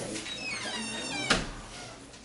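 A wooden cabinet door squeaks on its hinges, one high squeak falling in pitch, then shuts with a sharp click about a second and a quarter in.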